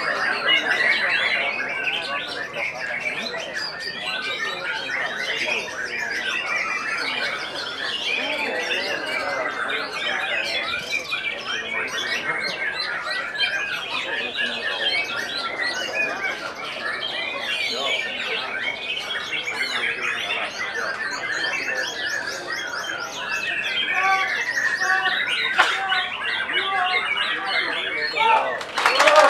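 Several caged white-rumped shamas (murai batu) singing at once: a dense, continuous tangle of overlapping whistles and rapid trills.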